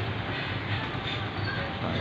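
Steady low rumble of a running engine or passing motor traffic, with no horn sounding.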